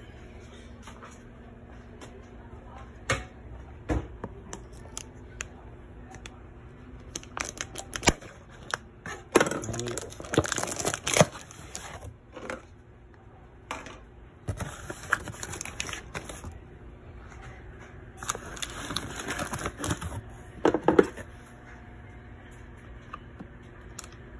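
Cardboard shipping box being opened by hand: scattered knocks, then several bursts of tearing and crinkling as the flaps and packing inside are pulled apart.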